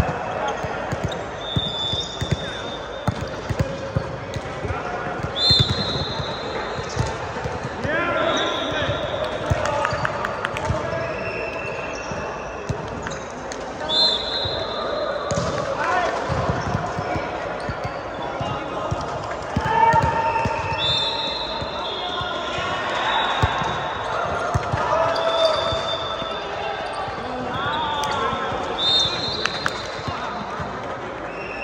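Indoor volleyball play in a large reverberant hall: the ball being struck and bouncing on the court in repeated sharp knocks, with several short high squeaks and players' voices calling out across the courts.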